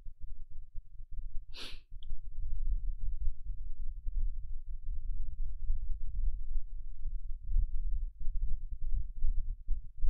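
A single short, sharp breath noise, like a sniff or a quick exhale at the microphone, about a second and a half in, over a steady low rumble.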